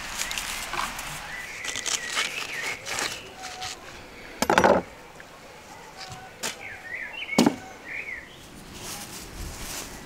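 Watermelon being cut and handled on a wooden table: a loud heavy chop about halfway through and a sharper knock a few seconds later, among smaller knocks, with birds chirping in the background.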